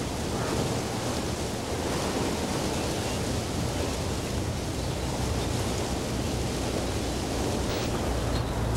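Steady rushing noise with a low hum beneath it and no distinct events.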